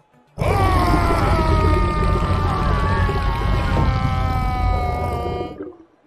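A cartoon shark's long, loud growl with a heavy low rumble, its pitch slowly falling. It starts just after the beginning, lasts about five seconds and stops sharply.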